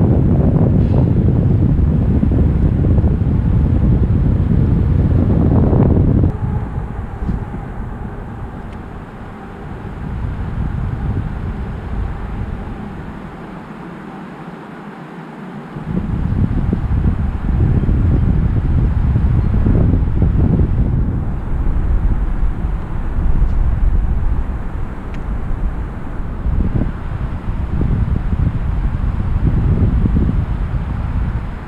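Wind buffeting the camera microphone in gusts: strong for about the first six seconds, dying down through the middle, then gusting again from about halfway on.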